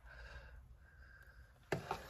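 Faint sounds of a metal spoon stirring and lifting thick porridge in a stainless steel pot, with a short knock near the end.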